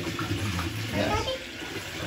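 Bathtub tap running steadily, pouring water into a partly filled tub.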